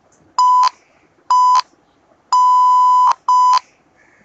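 Morse code sent as a steady electronic tone pitched near 1 kHz, keyed as four beeps: short, short, long, short.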